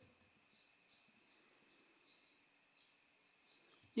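Near silence, with only a very faint steady high tone and a few faint, high chirp-like traces.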